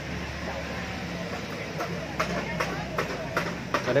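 A steady low mechanical hum with faint background voices, and a few short light clicks in the second half.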